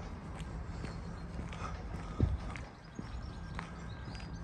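Footsteps on a paved path, soft steps about every half second over a faint steady outdoor background, with one heavier low thump a little past halfway.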